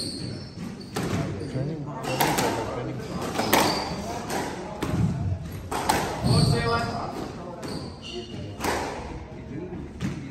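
Spectators chattering beside a squash court, with a squash ball knocking and thudding several times at irregular intervals in the echoing court.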